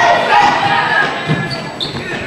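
A basketball bouncing on a hardwood gym floor, with a low thump about a second in, under spectators' and players' voices echoing in the hall.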